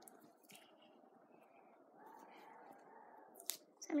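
Faint, soft handling sounds of fingers working a rabbit's skin loose from the carcass, with a light click a little past three seconds in.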